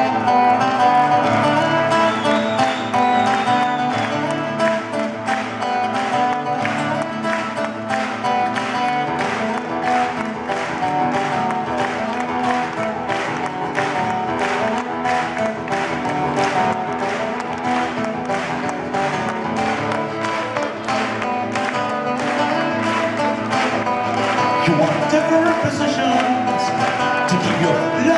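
Rock band playing live, guitars over a steady beat.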